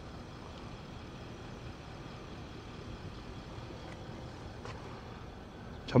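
Steady low hiss and hum inside a parked car's cabin, from the air-conditioning blowers turned up high with the engine running, with a faint click a little before five seconds in.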